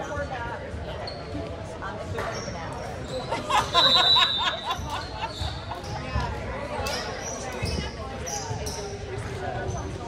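Players' and spectators' voices echoing in a school gymnasium during a volleyball match. About four seconds in comes the loudest sound, a short, shrill, fluttering whistle blast, typical of a referee's pea whistle signalling a serve. A few sharp knocks of ball or shoe on the hardwood follow.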